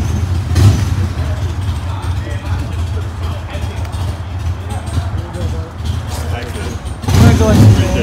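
Indian FTR 1200 S's V-twin engine idling steadily through its Akrapovic twin exhaust, growing louder for a moment near the end.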